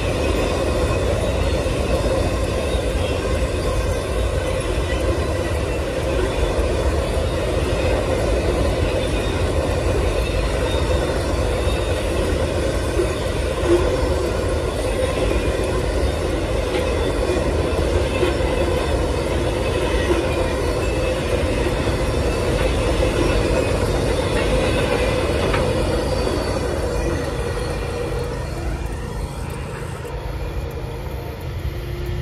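Amtrak Auto Train's enclosed autorack cars rolling past close by: a steady rumble of steel wheels on rail, growing a little quieter near the end as the train draws away.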